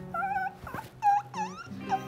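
A man whimpering in pain from a sore back: several short, high, wavering whining cries, over soft background music.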